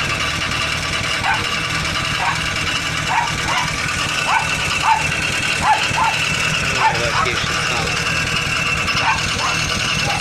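Nysa 522 van's engine idling steadily through a newly fitted homemade muffler, a continuous low exhaust rumble. Short high chirping calls repeat over it every half second to a second.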